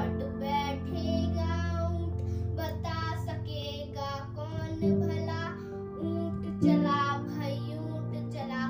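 A young girl singing a Hindi children's poem over instrumental backing music, with held low notes underneath that change a few times.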